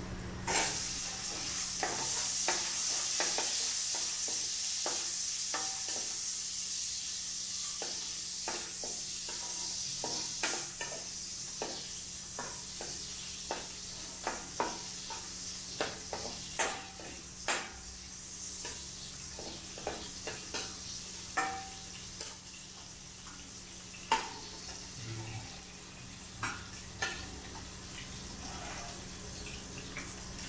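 Chopped ingredients hit hot oil in a wok and start sizzling loudly about half a second in, the sizzle easing over the next several seconds. A metal spatula then scrapes and knocks against the pan in irregular strokes as they are stir-fried over the continuing sizzle.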